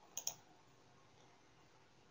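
Two light clicks in quick succession about a quarter of a second in, then near silence with faint room tone.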